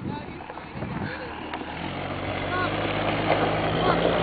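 A flatbed pickup truck's engine running steadily. Its low hum comes in a little under two seconds in and grows steadily louder as the microphone draws near it.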